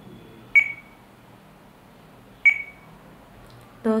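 RadioLink RC8X transmitter's touchscreen key beep sounding twice as the menu is tapped, once about half a second in and again about two and a half seconds in. Each is a short, high, single-pitched beep that fades quickly.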